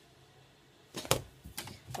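After a near-silent second, a quick run of five or so sharp clicks and light knocks, the loudest just past a second in.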